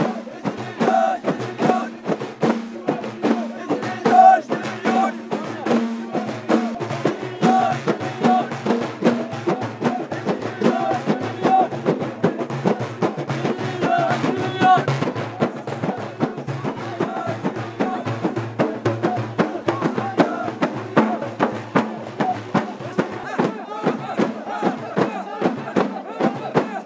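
Ahidus music: a row of large hand-held frame drums beaten together in a steady rhythm, with group singing over the drumming. The singing fades in the last few seconds, leaving mostly the drums.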